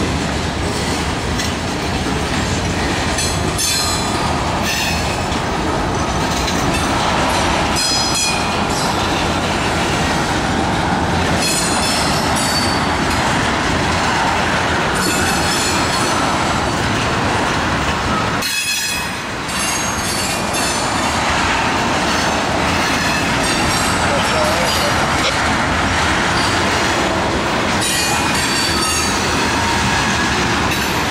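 Freight cars of a Norfolk Southern train rolling slowly past: a steady rumble and rattle of steel wheels on rail, with high-pitched wheel squeal rising every few seconds.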